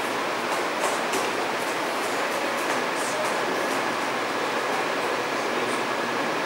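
Steady room noise, an even hiss, with faint scattered ticks and rustles.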